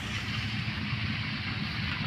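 Steady low hum of a distant engine running, heard under outdoor background noise.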